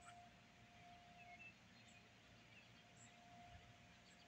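Near silence: faint outdoor ambience with a few tiny bird chirps about a second in.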